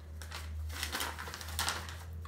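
A sheet of paper being unfolded by hand, with a quick run of crinkling and crackling.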